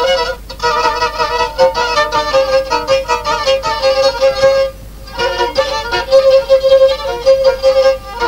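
Black Sea kemençe, a three-stringed bowed fiddle, playing a fast instrumental passage of short bowed notes over a steady drone note, with a brief break about halfway through.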